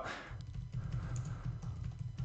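Computer keyboard typing: a quick, irregular run of quiet key clicks as a short phrase is typed.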